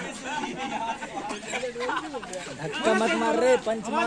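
Several people talking and calling out over one another, a loose chatter of voices.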